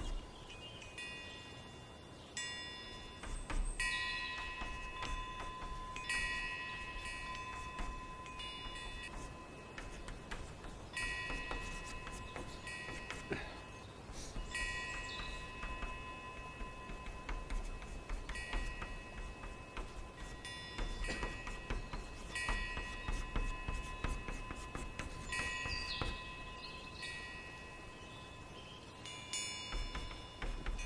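Chalk writing on a chalkboard: ticks and taps of the strokes, with repeated high ringing squeals, each lasting a second or two and cutting off abruptly.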